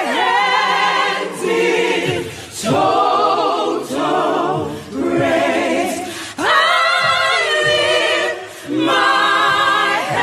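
Gospel choir singing a cappella, with a woman's lead voice soaring over held choir chords, in long phrases broken by short breaths.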